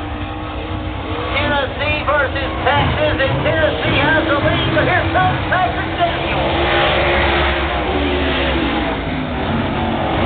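Late model race car engines running around a dirt oval, with a voice talking over them in the first half. Near the end a car passes close and its engine pitch falls away.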